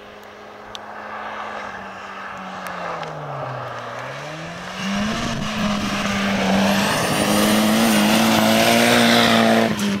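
Rally car at speed on a gravel stage, its engine held at steady high revs. The revs drop about a third of the way in and climb back. The engine and the hiss of tyres on gravel grow louder as the car comes close, loudest near the end.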